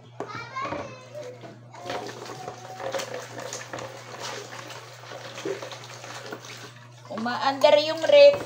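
Water splashing and pouring in a plastic basin at a sink, uneven with small knocks and clatters, under a steady low hum. A woman's voice is heard briefly at the start and speaks loudly near the end.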